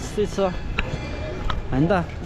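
Short fragments of a person's voice, one rising in pitch near the end, over steady outdoor background noise, with two brief sharp knocks in the middle.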